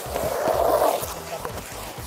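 Water from a garden hose spray gun running into a plastic basin of water, a splashing hiss that lasts about a second and then fades.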